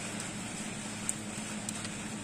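Refrigerator running with a steady low hum over a faint hiss, with a few light clicks from fingers handling a small diecast toy car.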